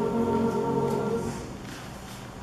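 Mixed high school choir singing a sustained chord unaccompanied. About a second and a half in, the chord fades away into the hall's reverberation.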